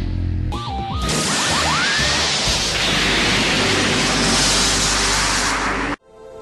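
Cartoon energy-blast sound effects: a few short rising zips, then a long, loud explosion noise that cuts off suddenly at the end, over soundtrack music.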